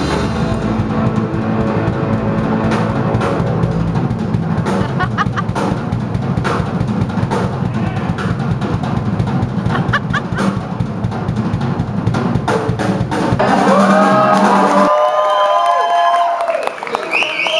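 Live rock drum kit played hard with fast fills and rolls across drums and cymbals, over a steady low rumble. About fifteen seconds in, the low end stops and shrill sliding sounds come in.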